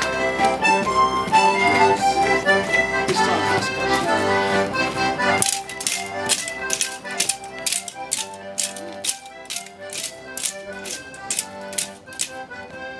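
Accordion playing a folk dance tune for a longsword dance. About halfway through the bass drops away and sharp clicks in time with the tune, about three a second, join the melody.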